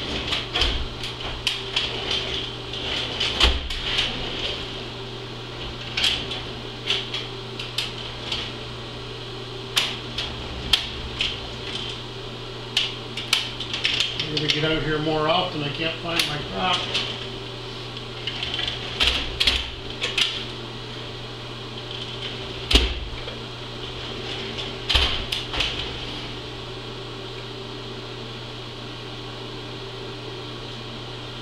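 Metal tools and parts clinking and knocking on a milling machine's table and rotary table setup, in irregular sharp taps, over a steady low hum.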